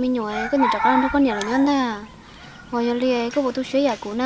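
A chicken calling in the background, over a woman talking, mostly in the first two seconds.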